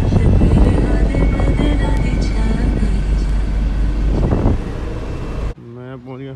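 Van cabin sound: a heavy, steady engine and road rumble with music playing over it. It cuts off abruptly about five and a half seconds in, and a brief voice follows.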